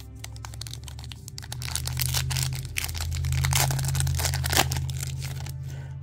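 Foil trading-card pack crinkling and tearing open, with a dense run of irregular crackles as the wrapper is pulled apart and the cards are slid out. Background music with steady low bass notes plays under it.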